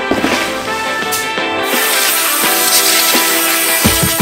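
Background music with sustained notes, with a noisy swell building through the second half.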